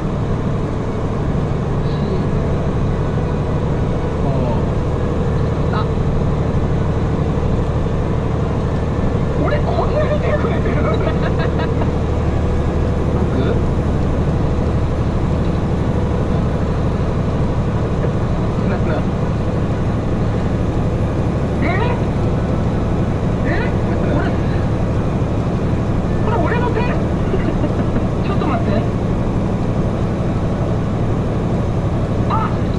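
Heavy tractor unit's diesel engine running steadily under way, a low drone heard inside the cab, with faint voices over it.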